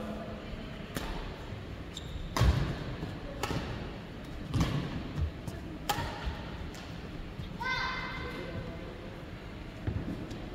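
Badminton rally: racket strings striking a shuttlecock five times, a little over a second apart, the third hit the loudest. A short high-pitched call or squeak follows near the end, after the last hit.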